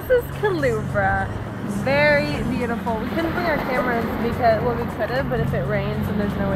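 A woman's voice talking and exclaiming without clear words, over a steady low hum.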